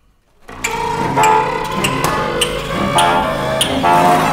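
Contemporary chamber ensemble of winds, strings, harp and piano bursting in loud about half a second in after a brief silence, with dense sustained tones cut through by sharp, irregular strikes.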